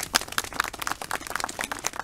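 Applause from a small crowd: scattered hand claps, many heard individually.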